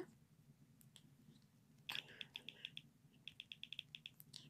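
Faint, rapid clicks of typing on a smartphone's on-screen keyboard, in two quick runs of taps, one about two seconds in and one near the end.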